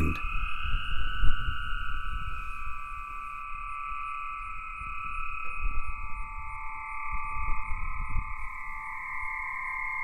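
Aeolian harp: wind blowing across a single string stretched over a pole between two buckets, sounding several long tones of different pitches at once that drift slowly down, with a low, uneven rumble beneath.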